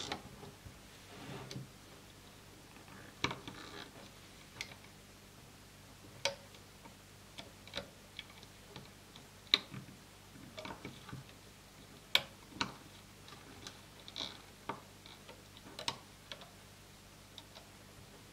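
Light, irregular clicks and taps of a metal loom hook against the plastic pegs of a Rainbow Loom as rubber bands are lifted and looped over, with the sharpest clicks about nine and a half and twelve seconds in.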